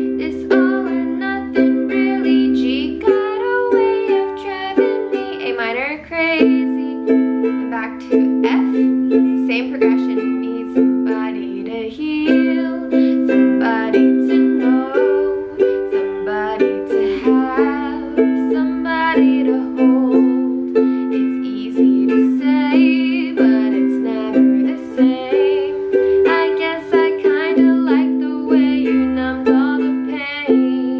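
Ukulele strummed rhythmically in a down-down-up-down-up-down pattern, moving through the chords C, G, A minor and F every few seconds. A woman sings the verse softly over it.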